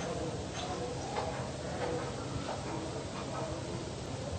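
Steady hiss and low hum of an old room recording, with faint, irregular ticks.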